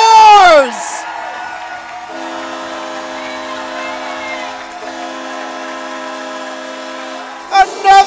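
Arena goal horn sounding a steady chord for about five seconds, starting about two seconds in and stopping shortly before the end, with a brief dip in the middle. It signals a goal, over a crowd cheering.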